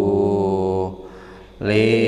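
A man's voice chanting a kitab reading in a drawn-out sung style. He holds one long steady note that stops a little before halfway, and after a short pause a new chanted phrase begins near the end.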